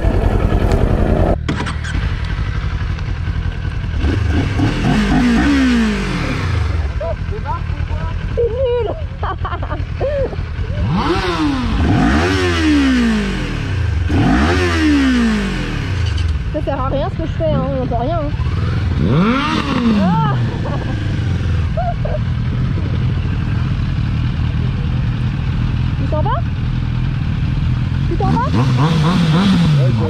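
Motorcycle engine idling, with throttle blips that rise and fall in pitch: one about five seconds in, three in quick succession around the middle, another a few seconds later and one near the end.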